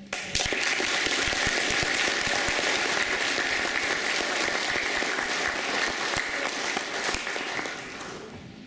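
Audience applauding, starting abruptly just after the start, holding steady, then tapering off near the end.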